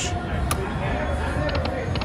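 Casino-floor din of background voices and electronic slot-machine tones, with one sharp click about half a second in and a few light ticks near the end.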